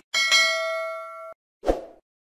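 Bell-like notification ding sound effect: a bright chime struck twice in quick succession, ringing for about a second and then cut off abruptly. A short dull thump follows near the end.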